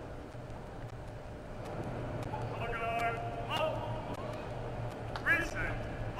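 A man's voice announcing over a stadium public-address system inside a large domed arena, starting about two and a half seconds in and again near the end, over a steady low background hum.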